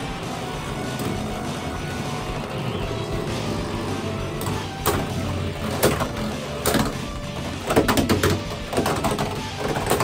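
Two Beyblade X spinning tops (Rhino Horn and Dran Dagger) whirring steadily as they spin on a stadium floor, then clashing from about five seconds in: a run of sharp clacks as they collide, several in quick succession near eight seconds.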